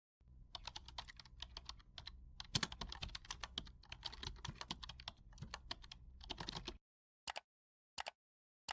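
Rapid computer-keyboard typing, dense clicking that stops about seven seconds in. A short, high chirp follows near the end.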